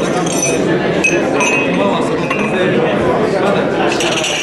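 Crowd chatter: many overlapping voices talking at once, with repeated light clinks of glasses through it.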